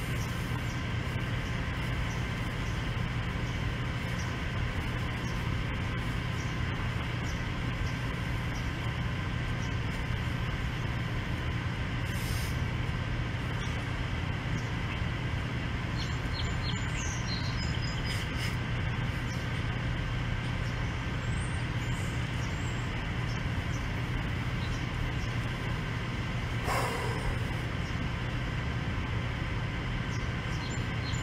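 A steady low machine-like hum with faint even tones above it, and a few faint high chirps about halfway through.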